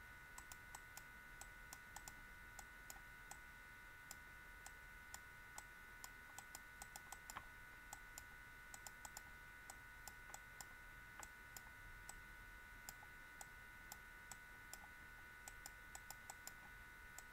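Faint, irregular clicking, a few clicks a second, from the pointing device used to handwrite equations on a computer screen, over a faint steady electrical whine.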